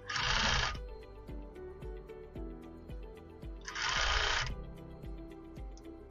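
Sewing machine stitching through a crochet blanket edge in two short runs, each under a second, about three and a half seconds apart, over background music.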